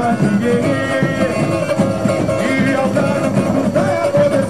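Samba school parade music: a samba-enredo sung over the school's percussion, played loud and continuous.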